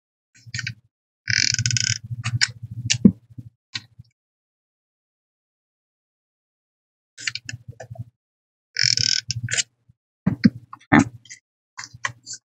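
Paper being handled and slid over a craft mat: two short rustles about a second and nine seconds in, with light taps and clicks around them and a pause in the middle. A low hum comes and goes with the sounds.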